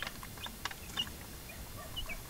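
Young native chickens peeping faintly a few times in short high notes while pecking feed, with light clicks of beaks tapping the feeder troughs.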